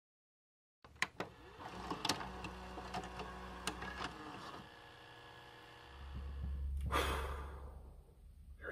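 VCR mechanism loading and starting a tape: a series of sharp clicks and clunks over a steady motor hum, then a short burst of noise about seven seconds in.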